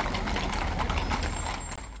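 Steady background ambience with a low rumble, like traffic noise, and a faint high whine in the second half.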